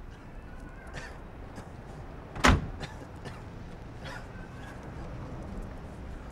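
A car door slammed shut once, sharply, about two and a half seconds in, over a steady low background.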